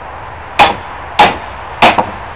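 Three sharp strikes with a short metallic ring, about two a second, as a hatchet is driven into the split along a yew log to open it.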